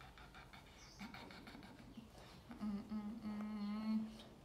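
A woman humming softly: a low, steady held note that starts about two and a half seconds in and carries on to the end, after some faint rustling.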